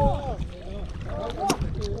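A man's drawn-out, dismayed vocal cries over a rumble of wind on the microphone, with one sharp click about one and a half seconds in.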